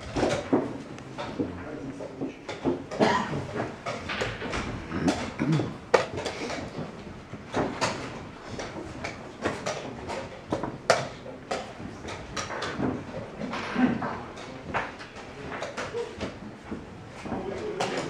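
Wooden chess pieces set down on the board and chess clock buttons pressed during a blitz game, giving irregular sharp clicks and knocks.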